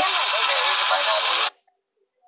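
Voices over a steady noisy hiss from a video playing on a phone, cut off abruptly about one and a half seconds in, then silence.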